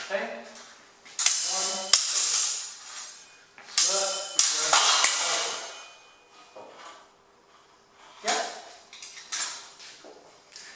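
Steel training swords clashing against each other and against steel bucklers in a series of sharp strikes with ringing tails. Several come in quick succession through the first half, and two more near the end.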